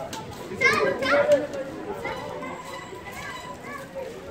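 Children's voices shouting and calling out in play, the loudest high calls about a second in, with quieter voices chattering around them.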